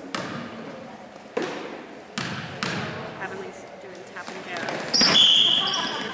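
A basketball bouncing on a hardwood gym floor, four separate bounces in the first three seconds as a free-throw shooter dribbles before the shot. Near the end comes a short, loud, high-pitched whistle blast, the loudest sound here, over a low murmur of spectators.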